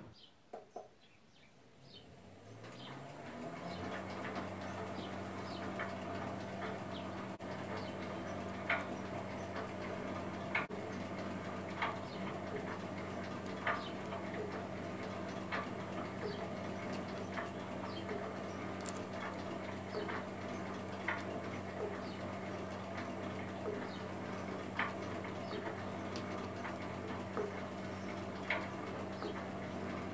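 Metal shaper starting up, its motor winding up over a couple of seconds and then running steadily with a high whine. Short ticks come about every second and a half as it cuts a keyway slot in an aluminium pulley bush.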